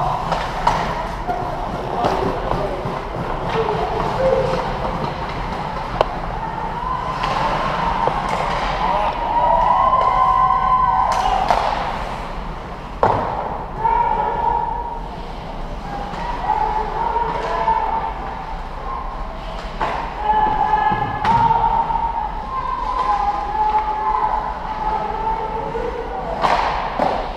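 Ice hockey game in a large, echoing rink: raised voices calling and shouting over play, with a few sharp knocks of sticks and puck now and then.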